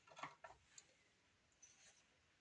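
Near silence, with a few faint clicks and taps in the first half second: a polished crystal tumble stone set down on a wooden tabletop and hands moving off it. One more faint tick comes near the end.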